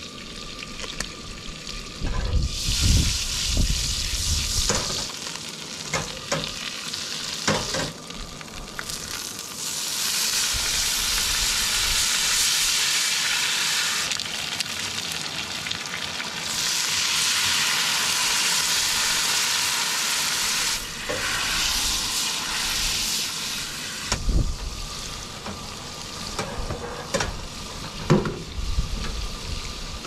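Garlic butter shrimp frying in a skillet: a steady sizzle that grows louder about ten seconds in and again around seventeen seconds. Scattered clicks and taps of a utensil stirring against the pan.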